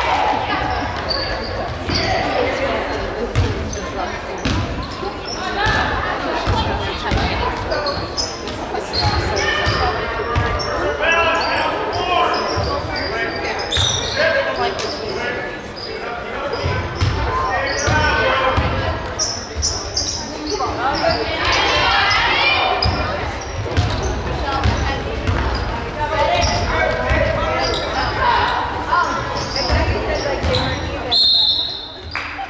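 Basketball bouncing on a hardwood gym floor, repeated low thumps, with players' and spectators' voices throughout the large gym.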